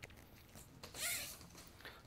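Quiet room tone with one faint, brief rustle about a second in, handling noise as the vacuum's corrugated hose is picked up.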